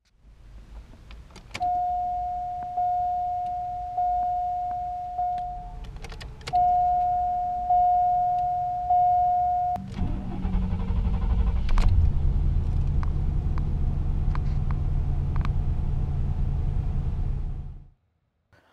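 A car's warning chime rings about once a second in single decaying tones, with a short break and a click near the middle. About ten seconds in, the 1991 Cadillac Brougham's 5.7-litre 350 V8 cranks and starts, the chime stops, and the engine settles into a steady idle.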